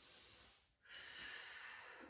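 Faint breathing of a woman under exertion: a short breath, then a longer one about a second in.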